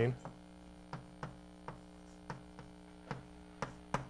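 Chalk tapping on a blackboard while a word is written: about eight short, sharp ticks at uneven intervals over a steady electrical mains hum.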